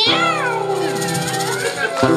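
A man's voice imitating a cat's meow into a microphone over a ringing acoustic guitar chord: a long falling meow at the start, then a shorter wavering one.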